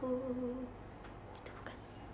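A young woman's voice humming one steady low note, unaccompanied, that ends under a second in as the close of a sung phrase; after it only faint room tone.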